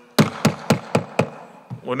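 Wooden gavel struck on a desk five times in quick, even succession, about four knocks a second. The first knock is the loudest.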